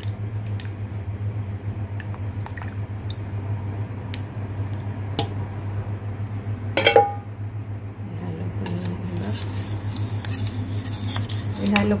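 Metal wire whisk stirring a thick milky mixture in a metal pot, its wires clicking and scraping against the pot. There is one louder clink about seven seconds in and faster, denser clicking in the last few seconds, over a steady low hum.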